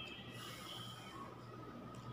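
A person breathing briefly through the nose while chewing a mouthful of food, a short faint rush of air about half a second in.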